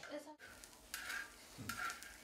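Faint scraping and clinking of coffee-ceremony utensils, with two short scrapes, one about a second in and one near the end.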